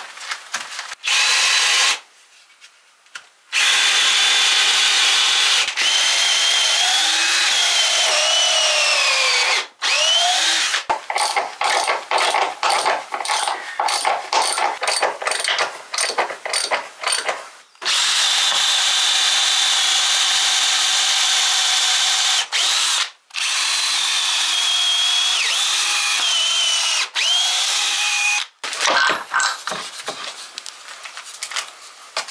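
Power drill working into a timber beam in long runs with short pauses, its motor pitch sagging and recovering as it loads up. In the middle comes a stretch of short, rapid on-off bursts.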